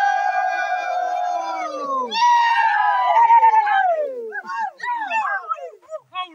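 A group of people shouting together in long drawn-out cries. Several voices hold one call for about two seconds, a second call slides downward in pitch, and a run of shorter rising-and-falling yells follows near the end.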